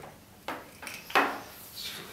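A DVI cable plug being pushed into a small USB display adapter and handled on a wooden desk, with two sharp knocks about half a second and a second in.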